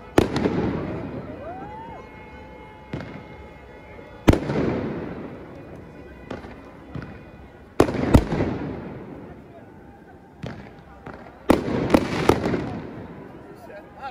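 Aerial fireworks going off: sharp bangs just after the start, about four seconds in, a pair near eight seconds and a quick cluster around twelve seconds. Each bang is followed by a long echoing rumble and crackle that slowly dies away.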